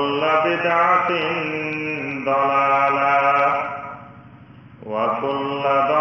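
A man chanting in long, melodic held phrases. One phrase fades out near four seconds in and the next begins about a second later.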